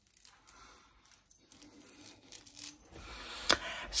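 Gold chain necklaces handled by hand: light metallic clinks and ticks as the links knock against each other and against metal rings. A sharper click comes near the end.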